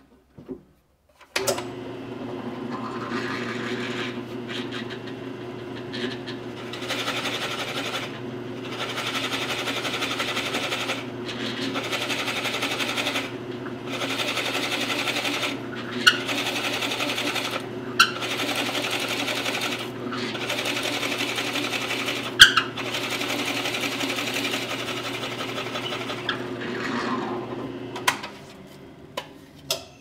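Drill press motor starts and runs steadily while a Forstner bit bores a hardware hole in a wooden door rail. The bit is fed in short plunges and backed off, to keep it cool and the cut clean, so the cutting noise comes and goes every second or two, with a few sharp clicks. The motor is switched off near the end and spins down.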